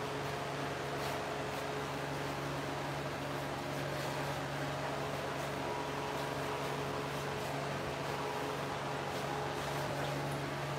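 A steady mechanical hum with a few held low tones over an even hiss, unchanging throughout: room noise from a running motor, with no music playing.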